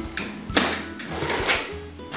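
A utility knife slicing the packing tape on a cardboard box, two short scraping strokes about half a second in and again a second later, over background music.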